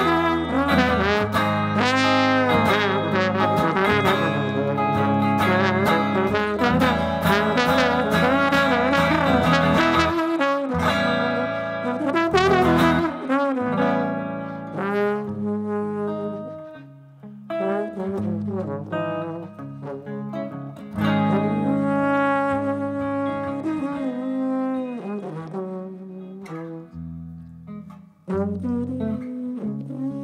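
Trombone solo over semi-hollow electric guitar accompaniment. The trombone plays a busy run of gliding phrases in the first half, then shorter phrases with gaps in the second half.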